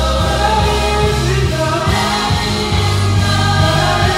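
Gospel praise team singing through the PA with a live band, lead and backing voices over bass and keyboard.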